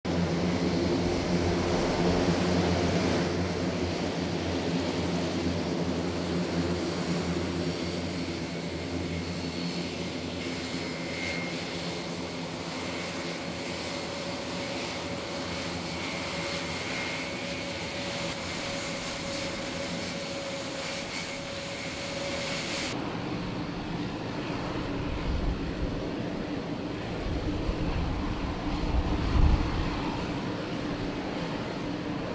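Airbus A400M's four turboprop engines running as it taxis: a steady drone with a low propeller hum, loudest in the first few seconds. About 23 s in it changes abruptly to a quieter steady hum, with wind buffeting the microphone near the end.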